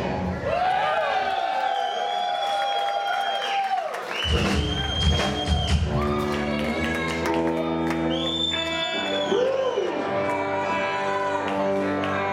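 Live rock band music with the drums stopped: long held notes ring out, some sliding in pitch. From about six seconds in a steady sustained chord takes over, with some cheering from the crowd.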